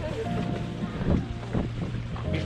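Wind buffeting the microphone of a handheld camera carried on foot, a steady low rumble.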